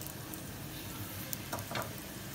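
Freshly added sliced onions frying in hot oil in a non-stick pot: a steady sizzle with a few faint crackles.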